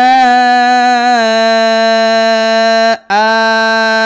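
A man's voice reciting Quranic Arabic in tajweed style, holding one long drawn-out vowel at a steady pitch for about three seconds, breaking off briefly, then holding it again. This is the madd, the prolonged vowel, of وَنِسَآءً (wa-nisā'an).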